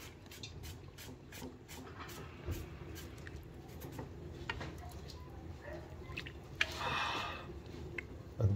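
Soup being ladled from a pot into a bowl: faint clicks and drips of liquid, with a louder pour of broth into the bowl about seven seconds in.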